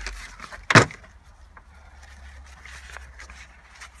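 Handling noise from rummaging through coiled charging cables and a fabric bag in a car's cargo compartment: rustling and light knocking, with one sharp knock just under a second in.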